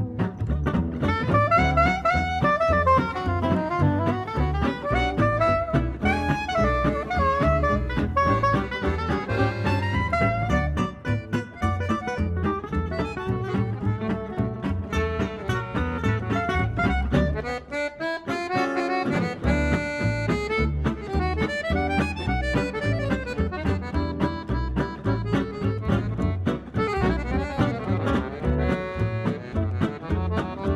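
Live gypsy jazz band playing a swing tune on saxophone, accordion, two acoustic guitars and bass, with the guitars strumming a steady beat. The bass and rhythm drop out briefly about eighteen seconds in, then come back in.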